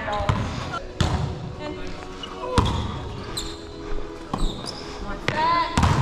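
Volleyball rally in a gymnasium: sharp smacks of hands and arms on the ball, the serve and then passes and hits, four in all, a second or two apart and echoing in the hall, with players' voices calling in between.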